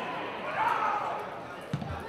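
Raised voices of players and spectators shouting at a football ground as the ball comes into the penalty area, loudest about half a second in, with a short dull thump near the end.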